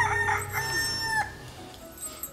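A rooster crowing: a couple of short notes and then one long held note that ends a little over a second in.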